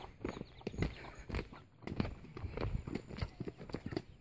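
Footsteps on a dirt footpath: an uneven run of soft steps, several a second.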